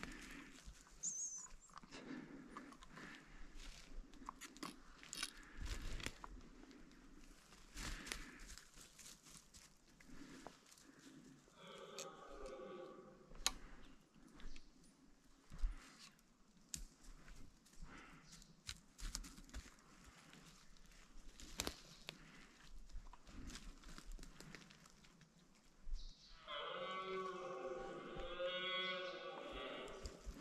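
Footsteps crunching through twigs and leaf litter on the forest floor. Twice a drawn-out, wavering bellow like a red stag's roar sounds, briefly around twelve seconds in and for about three seconds near the end, the loudest sound here.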